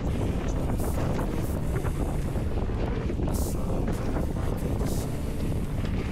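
Wind noise on an action camera's microphone and a steady low rumble from a mountain bike running fast down a dirt trail, with scattered clicks and rattles from the bike.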